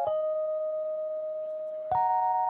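A melody of sustained software-instrument notes playing back from a piano roll. One long note is held, and a new pair of notes comes in near the end.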